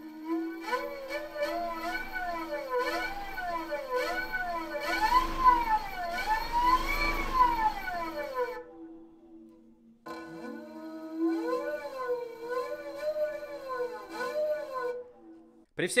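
EA98 brushless outrunner electric motor (90 KV) spinning a 30-inch two-blade propeller, its electric whine rising and falling in pitch again and again as the speed is swept up and down, over a steady lower hum. The whine stops about eight and a half seconds in and starts again sharply about a second and a half later.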